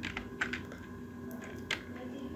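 Computer keyboard keys clicking as a short command is typed: a few sparse, separate keystrokes over a faint steady background hum.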